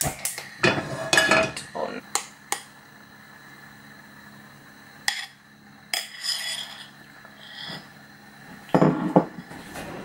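Kitchenware clinking and knocking as pancake batter is poured from a bowl into a nonstick frying pan: a cluster of sharp knocks in the first couple of seconds, a few scattered ones, and a louder clatter near the end.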